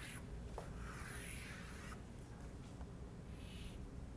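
Chalk scraping on a blackboard as a large circle and a line are drawn: a few light taps near the start, a longer stroke about a second in, and a shorter stroke near the end.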